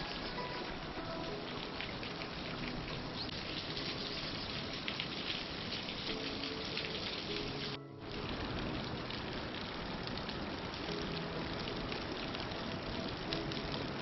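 Steady, dense patter of falling water drops, like rain, with a short break about halfway through.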